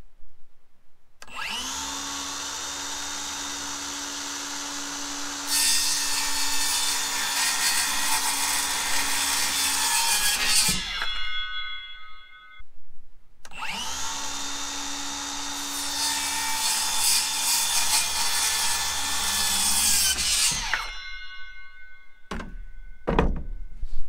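Milwaukee circular saw making two cuts through cedar picket fence boards. Each time the motor spins up with a rising whine, gets louder as the blade cuts into the wood, then winds down after the cut. A few short knocks near the end.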